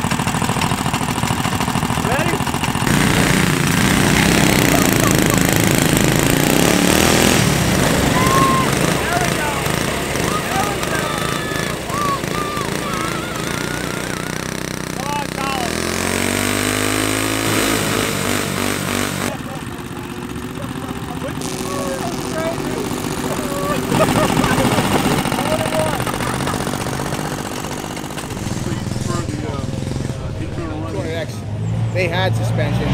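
Small single-cylinder off-road go-kart engines running hard against each other in a tug of war on a tow strap, rear tires spinning in sand. Partway through, one engine revs up. People are shouting over the engines.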